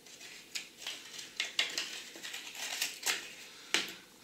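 Irregular clicks, snaps and rustles of packaging as a smartwatch and its strap are pulled free of a black box insert, with several sharp clicks spread through it.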